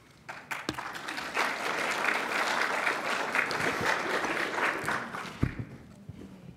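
Audience applauding, building up just under a second in and dying away near the end, with a single thump just before it stops.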